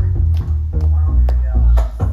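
Live pop band performing a song: heavy bass and a steady drum beat of about two hits a second, with electric guitar.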